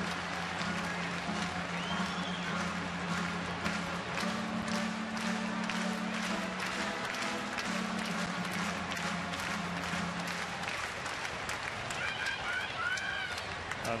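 Ballpark organ holding long low notes that change pitch twice and stop about ten seconds in, over the steady murmur of a stadium crowd with scattered hand claps.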